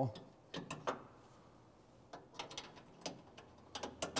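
Hand ratchet clicking in short runs as the coilover shock's mounting bolt is tightened: one run about half a second in, and more from about two seconds in.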